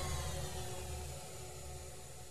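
The fading tail of a radio station's music sting: a held chord over a low hum dying away steadily after a whoosh hit.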